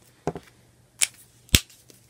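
Plastic alcohol markers being capped and set down: three or four short sharp clicks, the loudest about a second and a half in.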